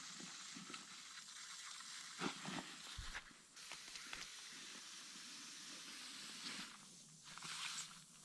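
Faint steady hiss of soapy water foaming over a slow air leak around the valve stem of a Bobcat tyre, with a couple of small handling knocks. The bubbling marks the leak point: the valve stem is leaking and needs replacing.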